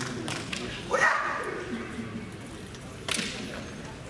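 Kendo fencer's kiai, a short loud shout about a second in, then a single sharp crack a couple of seconds later from bamboo shinai striking.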